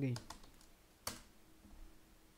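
Computer keyboard keys clicking as a web address is typed: a few light keystrokes, then one sharper key press about a second in.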